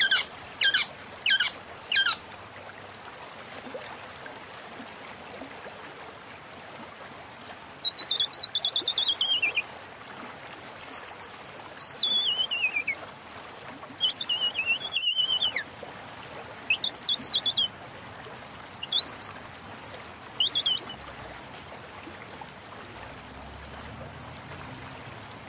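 Small birds chirping over a steady hiss: four quick falling chirps at the start, then bursts of repeated high chirps that sweep down in pitch, from about a third of the way in until near the end. The sound cuts out for an instant about two thirds of the way through.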